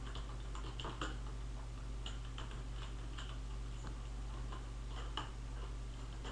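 Computer keyboard typing: irregular key clicks, a few a second, over a steady low hum.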